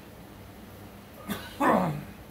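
A man coughing about a second and a half in: a short sharp cough, then a louder voiced one falling in pitch near the end, as a sip of coffee has gone down the wrong way.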